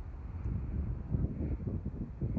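Wind buffeting the microphone: an uneven low rumble.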